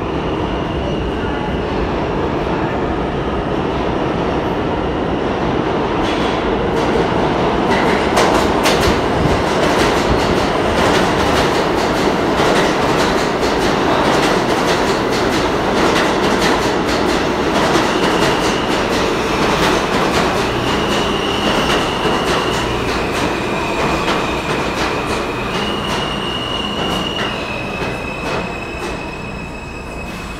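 New York City Subway train pulling into an underground station and running along the platform. Its rumble builds to a loud peak with wheels clicking over rail joints, then gradually eases as it slows. In the second half there are several short, high, steady wheel squeals.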